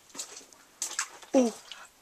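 A short exclamation of "ooh" about one and a half seconds in. It is preceded by a few faint clicks and scuffs, with otherwise quiet surroundings.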